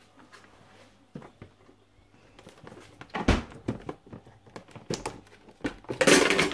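Handling sounds from a packet of dried spaghetti and a plastic tub: scattered clicks, knocks and light rustling, with one louder knock a little past three seconds in.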